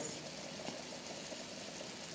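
Jamaican fried dumplings sizzling in a small amount of oil in a frying pan over a low flame: a steady, faint sizzle.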